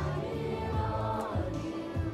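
Children's choir singing over steady low accompaniment notes.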